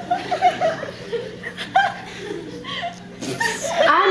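Chuckling and laughter in short, broken bursts.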